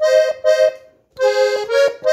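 Piano accordion playing short notes in thirds, two reeds sounding together, on the treble keyboard. There is a brief break about a second in, then the phrase goes on.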